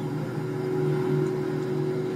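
A steady low hum with a few constant tones and no strike or click.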